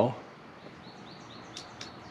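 Faint birds chirping in the background, with a short run of four high chirps about a second in.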